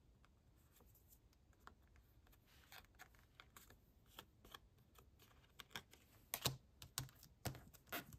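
Quiet paper handling: light clicks and taps of fingers on cardstock and paper, scattered at first and coming more often and louder in the last two seconds.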